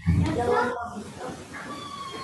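Voices in a classroom heard over a video-call link, over room noise. A faint, high, slightly falling tone begins near the end.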